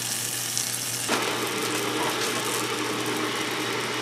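Butter sizzling under a pie-crust hand pie frying in an 8-inch cast iron skillet over medium-low heat: a steady, gentle sizzle that gets a little louder about a second in.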